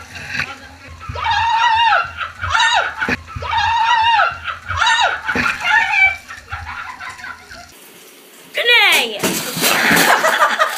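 A person shrieking in a tiled bathroom, about five high-pitched cries in a row, over a hand-held shower spraying and splashing water in a bathtub. Near the end, after the water stops, comes a loud sound falling in pitch.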